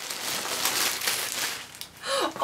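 Thin plastic packaging bag crinkling and rustling as a garment is pulled out of it, dying down near the end.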